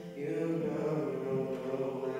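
A teenage boy singing an R&B song solo into a microphone, amplified through the hall's PA, holding long notes after a short breath near the start.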